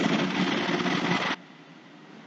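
Steady background hiss, like a fan or room noise, that cuts off abruptly about one and a half seconds in, leaving faint room tone.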